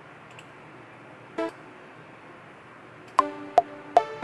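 A single short pitched note sounds about a second and a half in, as a note is drawn in the LMMS piano roll. Near the end, playback of a sampled lead melody starts: plucky notes with sharp attacks, several a second, in a lead line being reworked into triplet swing. Faint steady hiss underneath.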